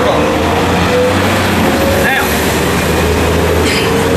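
Steady low rumble of a running motor vehicle in street traffic, with a wavering engine tone, under a man's brief speech.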